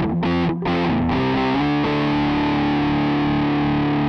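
Electric guitar played through the B6 mini amp's overdrive effect, giving a distorted tone. Short choppy chords with two brief stops in the first second are followed by a long sustained chord that rings on to the end.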